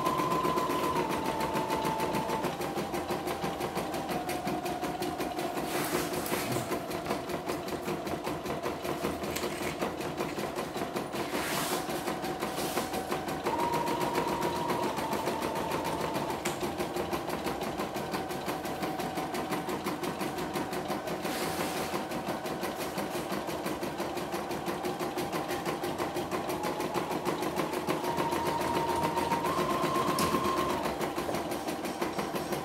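CNY E960 computerised embroidery machine stitching a design: a rapid, even needle rhythm over a motor hum whose pitch steps up and down every few seconds as the stitching speed changes. There are a few brief hissing rasps along the way.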